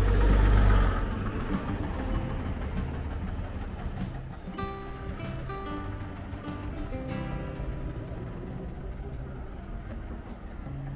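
A double-decker bus's engine rumbles past close by, loudest in the first second, then fades into quieter traffic noise. Background music with a clear tune sounds over it from about halfway through.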